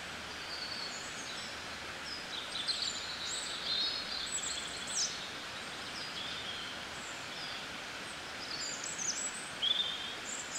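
Outdoor ambience: several small birds chirping and trilling over a steady background hiss, the calls busiest a couple of seconds in and again near the end.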